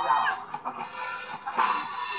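A live rock band playing through a PA system: a singer's amplified voice over electric guitar and drums, heard from the audience.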